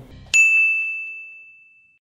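A single bright bell-like ding sound effect, struck sharply about a third of a second in and ringing out on one clear pitch, fading away over about a second and a half: a transition sting leading into the channel's logo end card.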